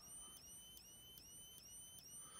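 Older Wheelock WS-series fire-alarm strobe flashing fast, its flash circuit giving a faint, high-pitched squeal that repeats about four times a second, once with each flash.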